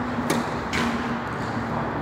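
Tennis racket striking the ball on a serve, a sharp hit followed about half a second later by a second short knock of the ball, over a steady low hum.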